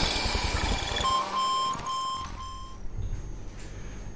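Short intro music sting over a logo card, ending in four short electronic beeps about half a second apart. It then gives way to faint room noise.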